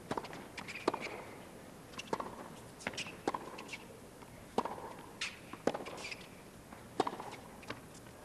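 Tennis rally on a hard court: a dozen or so sharp pops of the ball being struck by the rackets and bouncing on the court, coming irregularly about every half second to second.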